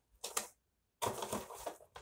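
Handling noise from model train parts: two light clicks, then about a second of crinkling and clattering as a plastic bag of small plastic bridge pieces and small cardboard boxes of model train cars are handled.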